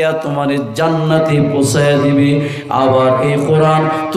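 A man's voice delivering an Islamic sermon in a melodic, chanted style, with long held notes and little pause, amplified through microphones.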